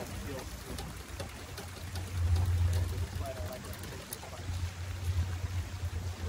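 A low rumble that swells and fades in gusts, loudest about two seconds in and again near the end, with faint, muffled voices and a few light clicks under it.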